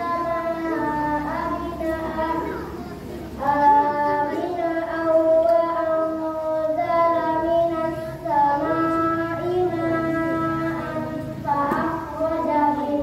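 Children singing a slow melody in long held notes, with a brief break about three seconds in.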